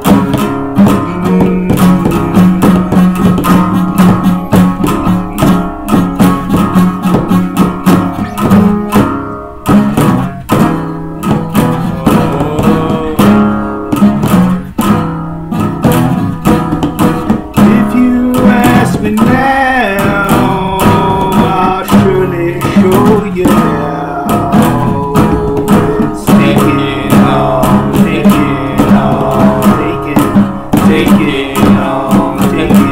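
Rock band music with guitar and a steady drum beat, with a bending melodic line, from a lead guitar or a wordless voice, coming in over it in the second half.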